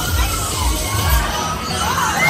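Riders screaming and shouting on a swinging fairground thrill ride, over music from the ride with a thumping bass beat.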